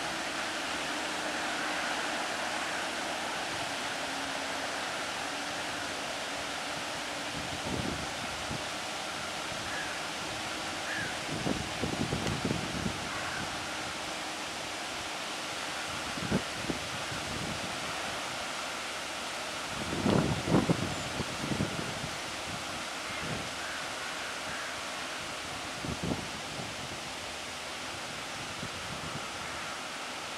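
Steady outdoor rush of wind and the ship's wake washing along the canal bank. Wind gusts buffet the microphone several times, the strongest about two-thirds of the way through.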